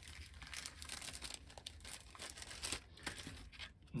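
Faint, irregular crinkling and rustling of paper and plastic packaging as small model-kit parts are handled and shuffled, with small clicks throughout.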